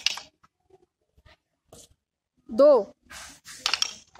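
A group of children knocking wooden PT dumbbells together to a counted drill: a ragged clack from many pairs at the start and another scattered cluster of clacks near the end. The strikes are not quite together, and a voice counts "two" between them.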